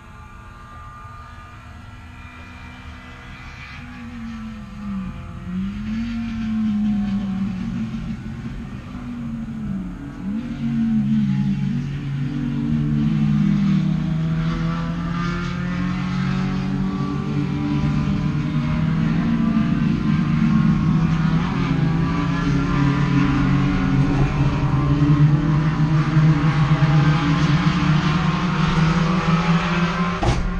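Volkswagen Gol race car engine heard from inside the stripped, roll-caged cabin. It is blipped up and down several times, then settles into a steadier running note that grows louder toward the end.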